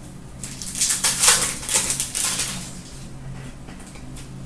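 Crinkling and tearing of a trading-card pack's foil wrapper as it is ripped open and the cards handled, a dense run of crackles from about half a second in that dies away before three seconds.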